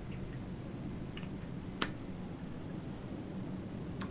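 Quiet room tone with a steady low hum, broken by a single sharp faint click a little under two seconds in and a couple of fainter small sounds.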